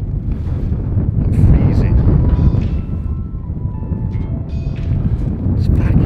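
Wind buffeting the microphone in gusts, a loud rumble that rises and falls. Several short knocks sound through it, and a few held musical notes come in around the middle.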